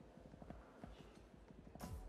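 Faint, quick, irregular clacks on a hard floor, such as steps or rolling wheels in a station hall, over quiet background noise. Near the end a louder hiss comes in.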